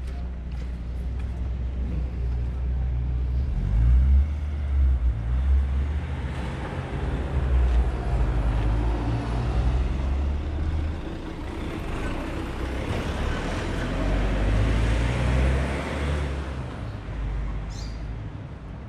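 Motor vehicles driving past on the street close by: a low engine note that shifts in pitch as they move off, with tyre and road noise swelling and fading as a van passes.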